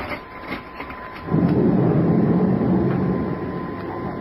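A low, rumbling rush of noise in a radio-drama sound effect. It starts suddenly about a second in and slowly fades.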